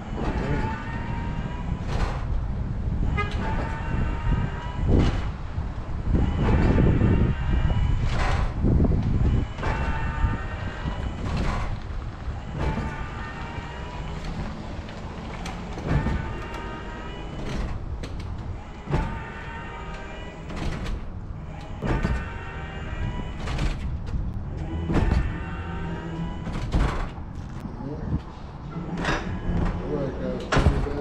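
ZW7170G electric stair-climbing dolly carrying a washing machine up stairs, its motor whining in short runs, each run ending in a knock as the dolly lands on the next step. The cycle repeats steadily about once every second and a half.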